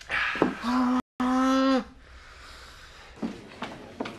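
A long, drawn-out shout from a person on one held note, broken by a brief dropout about a second in, which stops about two seconds in.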